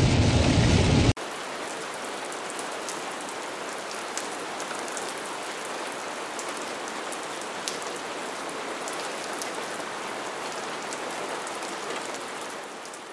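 Steady rain, an even hiss with scattered taps of single drops, starting abruptly about a second in. Before it comes about a second of louder low rumble inside a car.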